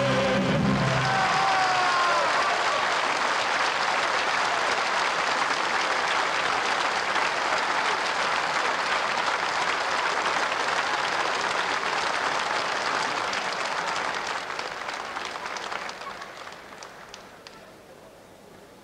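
Large concert audience applauding just after the music stops in the first second; the clapping holds steady, then dies away over the last few seconds.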